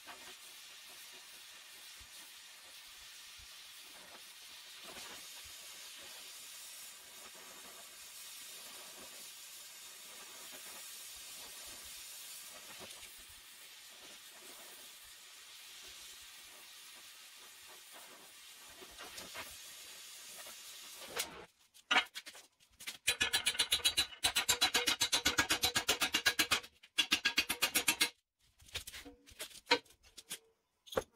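Oxy-fuel torch hissing steadily while heating a steel bracket for bending. About two-thirds of the way through, a much louder, choppy run of rapid strokes takes over, starting and stopping several times.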